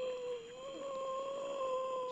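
A long, eerie wail on a horror film soundtrack that rises in pitch and then holds steady with a slight waver, over a faint high whine.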